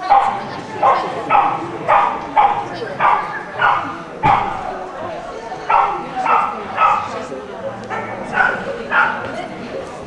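A small dog barking repeatedly while running an agility course, about two sharp barks a second with a couple of short pauses.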